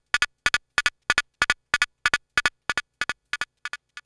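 Synthesized hi-hat pattern: short, bright noise ticks from a Mutable Instruments Braids module, about four a second, played through an Erica Synths Fusion tube VCO mixer. The ticks stop just before the end.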